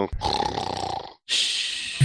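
A man's breathy, unpitched laugh close to the microphone, then a hissing exhale in the second half.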